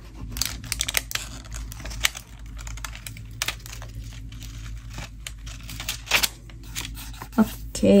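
Paper being handled, torn and pressed down as a cut-out piece is pasted into a journal: scattered crinkles, rips and light taps.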